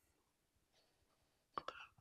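Near silence: room tone in a pause between a lecturer's sentences, with a couple of faint short sounds near the end, just before he speaks again.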